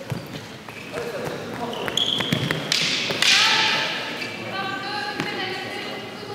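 Light knocks and taps of wooden canes and fighters' footsteps on a sports-hall floor during a canne de combat bout, followed about three seconds in by a short noisy burst and a raised voice calling out.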